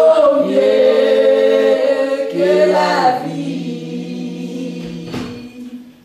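A church choir sings a hymn in harmony, holding long notes. After about three seconds the singing drops away and a low held note trails off. There is a brief knock near the end.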